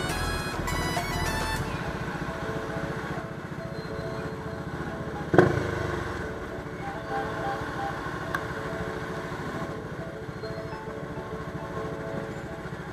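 Background music over a motorcycle engine, the Bajaj Dominar 400's single-cylinder, idling and pulling at low revs in slow, stop-and-go riding. A single sharp thump about five seconds in.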